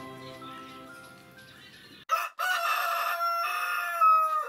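Soft background music fades out over the first two seconds; then a rooster crows once, a long cock-a-doodle-doo that drops in pitch as it ends.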